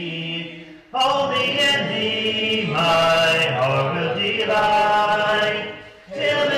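A hymn sung a cappella by a congregation led by a man's voice, in long held notes, with a short breath between phrases about a second in and again at the end.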